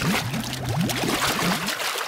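Cartoon sound effect of a small boat sinking: a gush of water at the start, then bubbling and gurgling with many short rising bubble pops.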